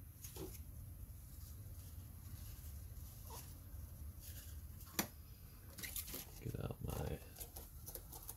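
Small metal brake master cylinder parts handled and set down on a cardboard-covered workbench: a few light clicks and knocks, the sharpest about five seconds in, with a cluster of handling noises near the end, over a steady low hum.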